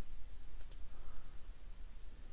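Two quick computer mouse clicks, close together, a little over half a second in, over a faint low steady hum.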